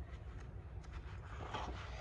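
Faint rubbing and rustling of hands pressing blue painter's tape onto a canvas board and handling the tape roll, with a few small clicks and a brief burst of rustling about one and a half seconds in, over a low steady hum.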